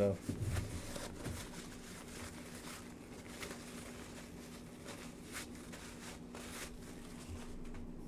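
Soft, scattered rustling and crinkling of a paper towel being rubbed between the hands, over a faint steady hum.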